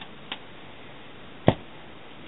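Plastic bottom access cover of a Fujitsu Siemens Amilo Pa 3553 laptop clicking as it is lifted off and handled: a faint click about a third of a second in, then one sharp, louder knock about a second and a half in.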